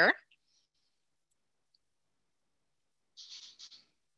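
The last syllable of a spoken word, then near silence broken about three seconds in by a brief run of light, high clicks lasting under a second.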